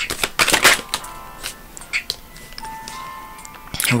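A deck of tarot cards being shuffled by hand: a quick run of card snaps and clicks in the first second, then scattered clicks, over quiet background music with held notes.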